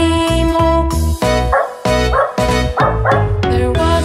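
Children's song music with four short dog barks in quick succession from about one and a half seconds in, set into the music track.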